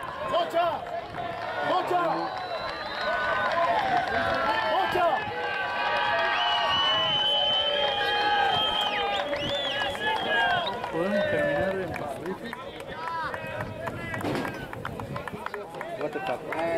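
Overlapping shouted calls from rugby players and sideline spectators, several voices at once, densest in the middle with one long drawn-out call.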